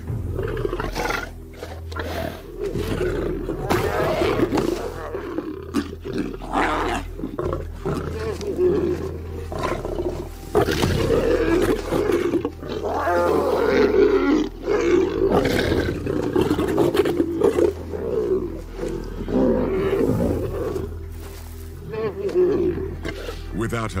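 Lions snarling and growling in a fight over a carcass: a lioness driving off hungry cubs that try to feed, loudest about ten to fifteen seconds in. A low music bed runs underneath.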